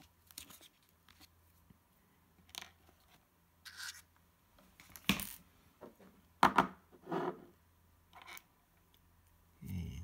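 Small extruder parts and plastic PTFE tubes being pulled out of a foam-lined cardboard box and set down on a wooden bench: a scatter of short scrapes, rustles and light clicks, the loudest about five and six and a half seconds in.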